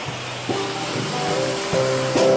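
Live song accompaniment of strummed guitar chords, with new chords struck about half a second in and again near the end.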